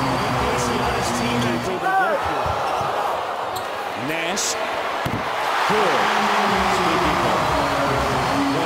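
Arena crowd murmur at a live NBA game, with a basketball being dribbled on the hardwood court and short sneaker squeaks.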